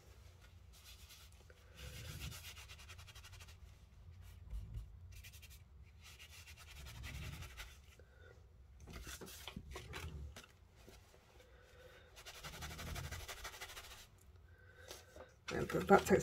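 Cloth towel rubbing over paper card and a stencil in several short, quiet bouts, wiping excess ink away.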